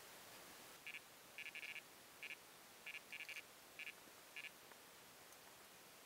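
Electronic carp bite alarm beeping: short high beeps at irregular intervals, some in quick runs, over the first four and a half seconds as line is drawn off the rod, the sign of a fish taking the bait.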